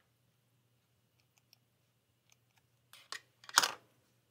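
A correction-tape (white-out) dispenser and pen handled on paper to cover a written mistake: a few faint clicks, then two short scratchy swipes near the end, the second the louder.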